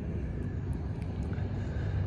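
Steady low engine-like rumble with a constant low hum.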